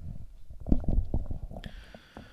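Handling noise from a large book being moved about close to a desk microphone: a run of low, muffled thumps and rubs that thin out near the end.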